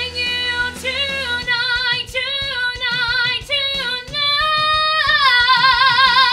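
Woman singing a rock musical number, held notes with vibrato, rising to a long belted high note about five seconds in.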